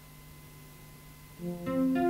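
Faint steady hum, then about one and a half seconds in an electronic keyboard starts the song's intro with a few short pitched notes.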